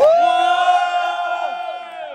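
Crowd cheering: many voices in a loud, held "whoo" that starts suddenly, then fades away over about two seconds, the pitches falling as the voices trail off.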